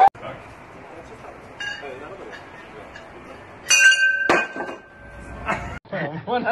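A loud clink of glass about four seconds in, ringing on for about a second and a half, with a sharp knock just after it.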